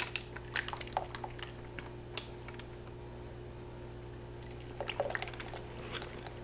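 Thin, light-trace cold process soap batter pouring from a plastic pitcher into a lined mold: faint soft splats and small clicks, heard over a steady low hum.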